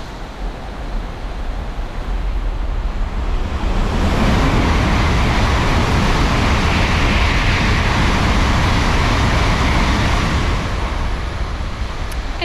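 Shinkansen bullet train racing through the station without stopping: a rushing noise that builds about two seconds in, stays loud for about six seconds, then fades near the end.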